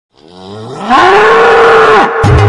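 A bull bellowing: one long call that swells in and rises in pitch over the first second, holds, then falls away at the end.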